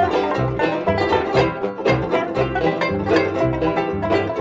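Background music: quick plucked notes over a regular bass line that changes about twice a second.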